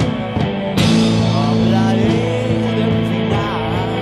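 Rock band playing an instrumental passage: sustained chords under a lead line that slides up and down in pitch, with a loud hit about a second in.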